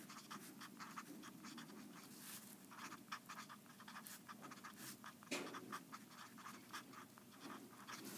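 Felt-tip marker faintly scratching across paper in many short strokes as words are written out.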